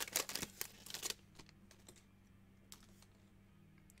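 Crinkling of a shiny foil trading-card pack wrapper and cards being handled: a quick run of small crackling clicks for about the first second, then only a few faint ticks.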